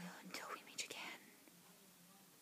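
A person whispering briefly, about a second of breathy words, then faint room tone.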